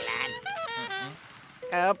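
Cartoon character voices: short mumbled vocal sounds over background music, a brief lull, then a loud shout starting near the end.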